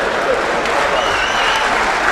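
Live theatre audience applauding steadily.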